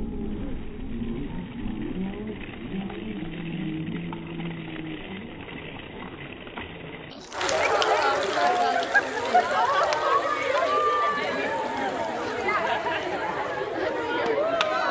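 Excited voices of several people talking and shouting in an echoing gymnasium. About seven seconds in, the sound turns abruptly louder and brighter, with many overlapping voices and a couple of sharp clicks.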